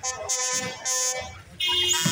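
Buzzy, reedy wind-instrument music: a few short blasts, then a long held note from about a second and a half in.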